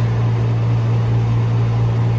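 Air conditioner running in the room: a steady low hum with a faint hiss over it.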